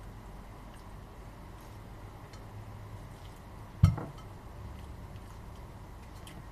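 Quiet room with a few faint small clicks, and one sharp knock on a hard surface about four seconds in, the loudest sound.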